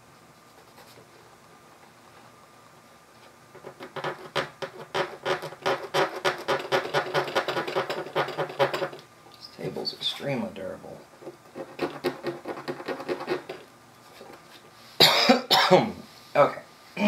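A man's voice making rapid pulsed sounds through the middle, then several loud coughs near the end.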